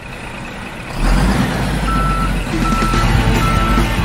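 Intro music: a swell that builds for about a second, then loud rock music with a heavy low end. Over it, a truck's reversing beeper sounds at a steady pitch about once every 0.8 seconds.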